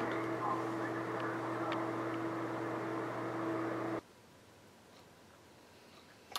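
Steady low electrical hum with faint room noise from powered-up radio equipment, cutting off abruptly to dead silence about four seconds in.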